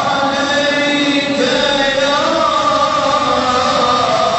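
Men chanting a devotional mevlud hymn, their voices holding long notes that bend slowly from one pitch to the next, the lead voice through a handheld microphone.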